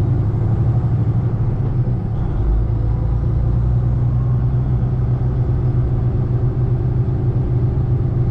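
Semi truck's diesel engine and road noise heard from inside the cab while driving slowly: a steady low drone with no change in pace.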